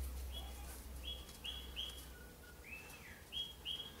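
A small bird chirping in the background: a string of short, high chirps, roughly two a second, some slightly falling in pitch, over a faint steady low hum.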